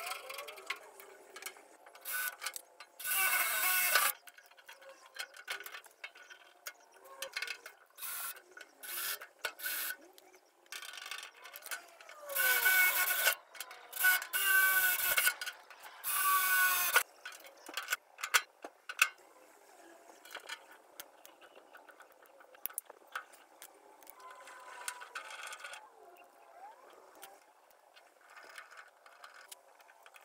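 A cordless drill runs in several short bursts of about a second each, drilling into the jointer's cabinet. Its motor whine slides up and down in pitch as the trigger is squeezed and let off. Clicks and knocks of handling fall in between the bursts.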